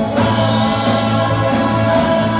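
Live rock band playing loud amplified music, with electric guitars, drums and a sung vocal, the sustained chords changing shortly after the start.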